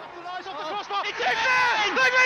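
Football commentator's excited voice, its pitch swooping up and down as it builds to calling a goal.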